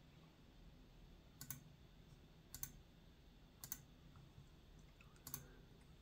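Four faint computer mouse clicks, roughly a second apart, over near silence.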